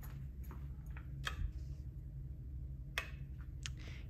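Quiet room tone: a steady low hum with a few scattered faint clicks.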